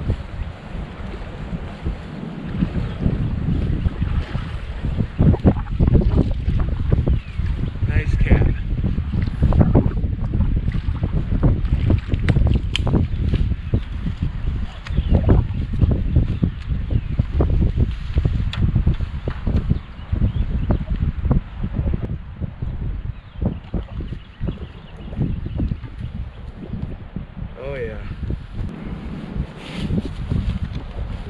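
Wind buffeting the microphone in uneven gusts: a loud, low rumbling that rises and falls, with occasional short knocks.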